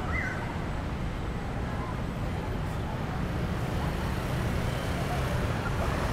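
Steady low rumble of city road traffic, with faint voices of people nearby.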